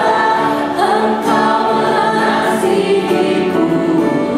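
Church worship team singing a worship song in long held notes: a woman leads, with a man and a woman singing along, over piano and keyboard accompaniment.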